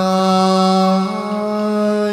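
A chầu văn ritual singer holding one long, steady sung note, its tone shifting slightly about a second in.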